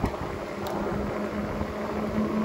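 Ecotric dual-hub-motor e-bike riding along a paved road: a steady hum with a faint constant tone, plus tyre and wind noise.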